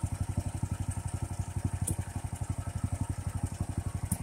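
Duramax XP18HPE 18 hp single-cylinder engine on a chipper shredder, running unloaded with nothing being fed, giving a steady rapid exhaust beat of about twelve pulses a second.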